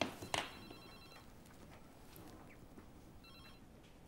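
Telephone bell ringing faintly in two short trilling bursts, one just after the start and one near the end. Two sharp clicks come right at the start and are the loudest sounds.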